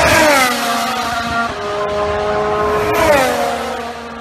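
High-revving racing car engine. Its pitch falls sharply twice, at the start and again about three seconds in, holds steady in between, and the sound fades near the end.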